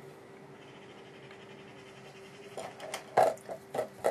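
A faint steady hum, then a few sharp taps and knocks in the last second and a half, the loudest about three seconds in.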